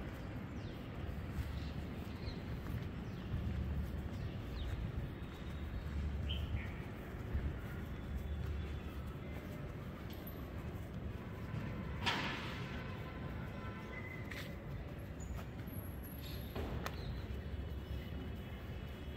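Outdoor park ambience: a steady low rumble with a few faint bird chirps, and one sharp click about two-thirds of the way through.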